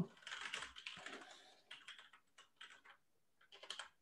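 Faint keystrokes on a computer keyboard as a command is typed, with a quick run of key clicks near the end.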